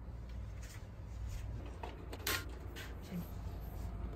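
Quiet room sound: a steady low hum with a few faint clicks, one sharper click about two seconds in.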